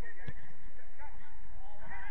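Players' shouts and calls across a football pitch, with one sharp thud of a ball being kicked about a third of a second in.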